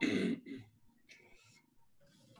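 A man clearing his throat: one loud rasp at the start, a shorter one just after, then a faint breath.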